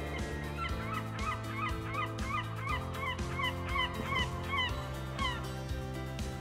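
A rapid series of short bird-like chirping calls, about three a second, over background music with a steady beat; the calls begin under a second in and stop a little before the end.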